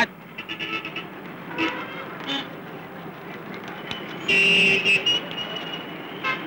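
Street traffic background with a car horn honking once for under a second about four seconds in, and fainter short toots earlier.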